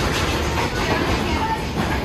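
Rotating drum of a vortex tunnel running with a steady rumble, with faint voices over it.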